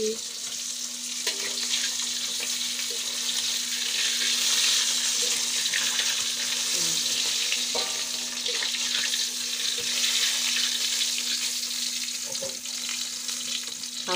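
Fish frying in hot oil in a wok: a steady, dense sizzle throughout.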